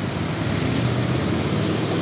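Street traffic: a motor vehicle's engine running steadily with a low hum under a wash of road noise.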